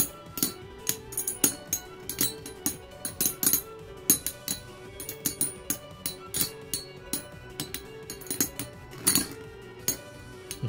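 Three Metal Fight Beyblade spinning tops (Dark Gasher, Dark Wolf and Dark Libra) knocking against one another in a plastic stadium, their metal wheels making rapid, irregular clinks and clicks. Background music plays under them.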